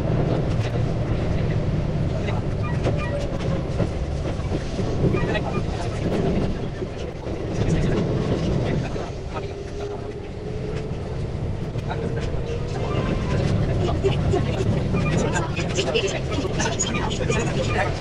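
Keihan 8000 series electric train running, heard from inside the front car and played back sped up: a steady rumble from the wheels and track, with a faint gliding whine and scattered clicks.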